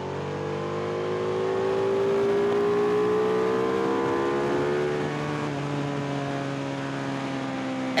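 Ducati 1299 Panigale S's V-twin engine pulling on track with wind rush around the bike; its note climbs slowly, then eases and falls a little about five seconds in.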